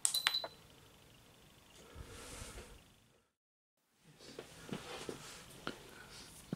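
A sharp click and a short, high electronic beep right at the start as the oil-filled radiator is switched on by remote, followed by faint handling noise and, after a second of dead silence at an edit, a few faint clicks.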